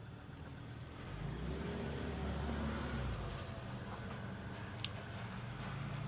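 Low, steady rumble of a motor vehicle's engine, swelling about a second in and holding, with a few faint held tones in it.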